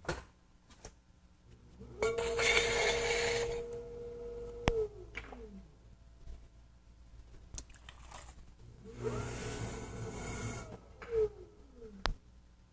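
Electric potter's wheel spinning with a steady hum while wet hands wipe clay slip off the metal wheel head with a hissing scrape, then the wheel winding down in a falling tone; this happens twice.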